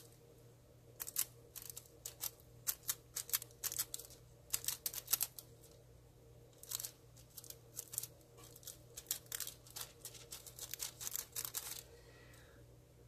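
Thin holographic nail transfer foil crinkling and crackling under the fingertips, with small sharp clicks, as it is blotted onto a practice nail tip and peeled away. The sounds come in quick irregular bursts with a short lull about halfway through.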